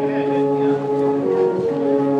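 Alphorns played together, several long held notes sounding at once in harmony, one of the notes moving up to a new pitch about midway through.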